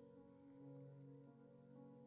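Faint, soft background music of sustained chords held steady.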